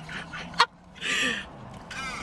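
A woman's breathless, wheezing laughter: one sharp burst about half a second in, then a noisy drawn breath.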